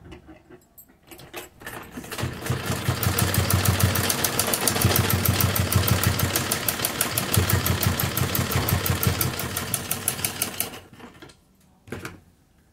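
Domestic sewing machine stitching a seam through layered cotton fabric: a fast, even clatter of needle strokes that starts about two seconds in, runs steadily, and slows to a stop near the end.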